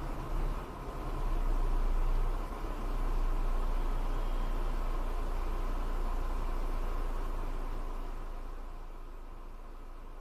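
Car driving slowly on a concrete road, heard through a dash cam inside the cabin: a steady low engine and road rumble with an even hiss. It grows a little louder about two seconds in and fades somewhat near the end.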